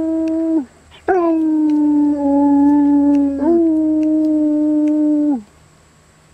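Husky howling in two long notes. The first is held and drops away about half a second in. The second begins about a second in, slides slowly down, steps back up partway through and falls off near the end.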